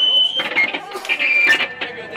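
Electric guitar amplifier feedback: a high steady whine that cuts off about half a second in, followed by brief scattered squeals and clicks from the instruments.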